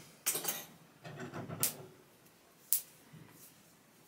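Light handling noises of wire and small metal guitar hardware: a few scattered clicks and clinks with soft rustling, the sharpest click about three-quarters of the way through.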